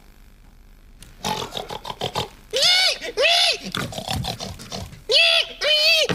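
A man imitating a pig with his voice: rough grunts starting about a second in, then four high squealing oinks in two pairs.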